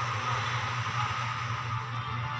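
Background drama score: a steady, sustained low drone with held tones and no beat.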